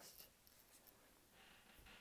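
Faint scratching of a felt-tip marker on paper as a number is written and a box is drawn around it, heard mostly as a short stroke near the end.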